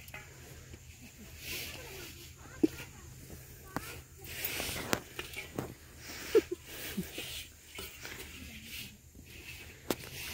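Rustling and scraping of crumbly compost and soil as dark fertilizer is scattered by hand into a planting hole, with a few sharp knocks from handling and some faint voice sounds.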